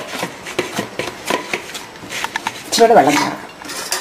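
A hand mixing flour in a stainless steel bowl: fingers scraping and pressing the flour against the steel, with many small clicks and rubs. A brief voice cuts in about three seconds in.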